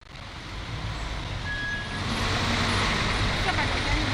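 Street traffic in a busy road lined with matatu minibuses: a steady rumble of running engines and road noise. It builds over the first second or two, then holds steady.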